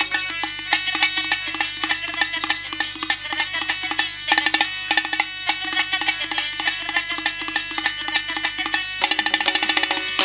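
Tabla played with quick, rhythmic hand strokes over steady held melodic tones: the live instrumental accompaniment of a Tamil folk drama.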